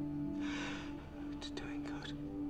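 Soft sustained background music with whispered speech over it: a breathy whisper about half a second in, then a few short whispered words in the second half.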